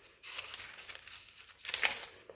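Thin pages of a compact Bible rustling as they are flipped through by hand, with a louder page turn near the end.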